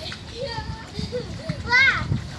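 Children's voices calling and shouting in play, with a loud, high-pitched shout near the end.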